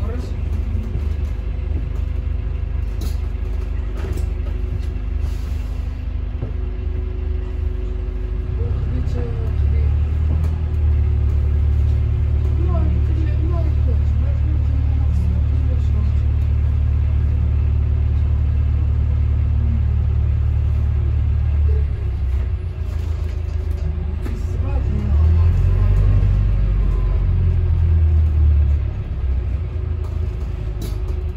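Interior rumble of a Volvo B5LH hybrid double-decker bus on the move, with the engine's deep drone swelling from about a third of the way in and again for a few seconds near the end.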